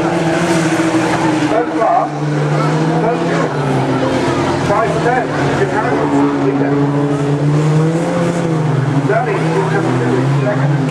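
Engines of several small racing cars running at speed around an oval track, their notes holding and slowly shifting in pitch as the cars pass. Spectators' voices sound over the engines.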